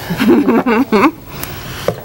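A person's voice, a short stretch of talk or a laugh, in the first half; then quieter, with a single click near the end.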